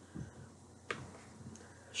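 A quiet pause holding one sharp, short click about a second in, with a soft low sound just before it.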